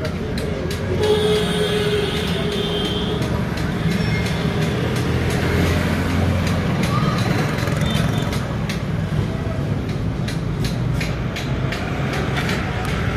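A steady low rumble like passing vehicles, with voices and scattered short clicks over it.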